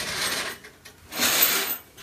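Shower curtain being pulled aside, its rings scraping along the rod in two swipes, the second one louder.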